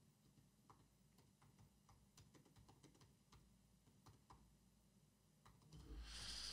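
Faint typing on a MacBook keyboard: a dozen or so soft, irregular key clicks in near silence, with a breath near the end.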